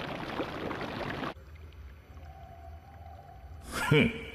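Anime sound effect of a rushing energy aura around a glowing red-chakra hand; it cuts off suddenly about a second in. A quiet stretch follows with a low hum and a faint held tone, then a short, loud rising whoosh just before the end.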